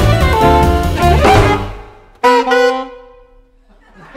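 Live jazz quintet of two alto saxophones, piano, upright bass and drums playing the closing bars of a tune. The band stops about one and a half seconds in, then hits one last short accented chord that rings and fades away.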